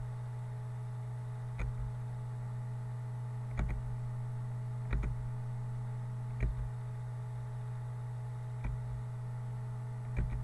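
Computer mouse clicking, about five single clicks spaced one to two seconds apart, over a steady low electrical hum.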